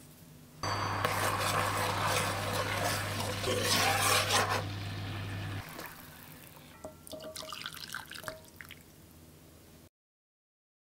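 Vinegar, fish sauce and sugar marinade bubbling hard in a frying pan, a loud fizzing boil over a steady low hum. About five and a half seconds in the hum stops and the boil dies down to soft bubbling with small pops as the heat is turned off.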